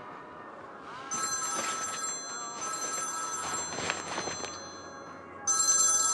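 Smartphone ringing with an incoming call: a high electronic ringtone in pairs, two rings starting about a second in, a pause, then the next ring starting near the end.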